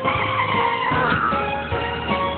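Cartoon skid sound effect, a screech that slides downward in pitch over about a second and a half, over background music.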